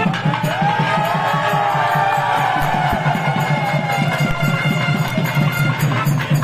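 Getti melam, the Tamil wedding music of the thali-tying: thavil drums beating fast and steady under a nadaswaram's wavering, gliding melody.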